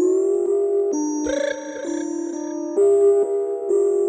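Simple synthesizer melody of held, clear notes that step between pitches every half second to a second, with a short noisy hit about a second and a quarter in.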